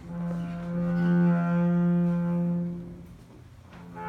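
Double bass played with the bow: one long held note that swells and then fades after about three seconds, with a fresh bowed note starting right at the end.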